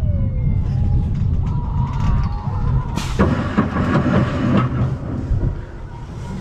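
Vekoma roller coaster train running along its steel track, heard from on board: a steady low rumble mixed with wind on the microphone. About three seconds in, a harsher, louder stretch with high gliding squeals lasts a second and a half.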